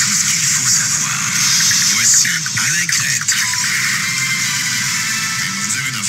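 Old, poor-quality radio recording played back on air: loud hiss and static over muffled, wavering sounds beneath.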